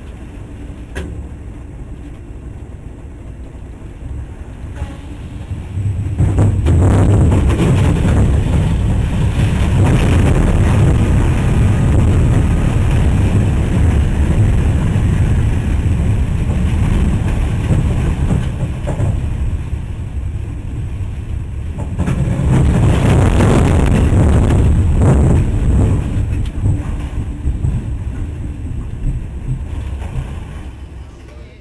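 Tornado winds buffeting a freight locomotive's cab: a loud, rough rush of wind that builds sharply about six seconds in, eases briefly, then surges again before dying down near the end.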